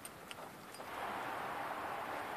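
Rustling of tall dry grass as someone walks through it, rising to a steady hiss about a second in.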